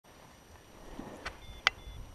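Paragliding harness gear being handled: two sharp clicks, the second much the loudest, over a low rumble.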